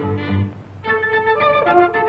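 Orchestral score music from an early-1930s cartoon soundtrack. There is a short break a little over half a second in, then a melody of short held notes.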